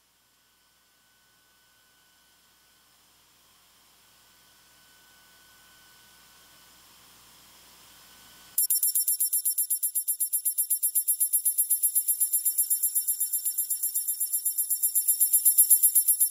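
Electronic music from a synthesizer: after near silence a faint high hiss slowly swells, then about halfway through a rapid, evenly pulsing high-pitched beeping starts suddenly and keeps going, alarm-like.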